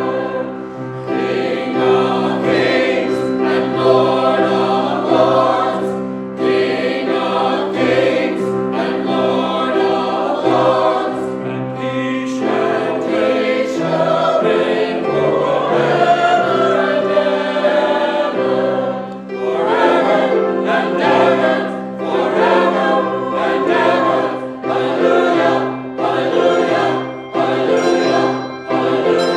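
A mixed choir of men and women singing a hymn, in phrases of a few seconds each, over steady held low notes.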